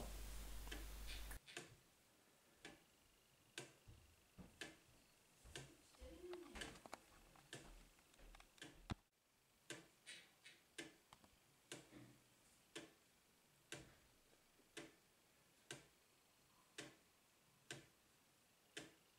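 Clayton Boyer 'Swing Time' wooden gear clock with a balance pendulum, ticking faintly at about one tick a second.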